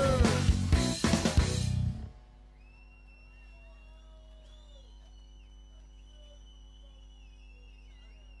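A band's song ending: a held guitar note slides down in pitch over the last drum hits and chord stabs, then the music stops abruptly about two seconds in. After that there is only a faint steady hum with faint high whistling glides.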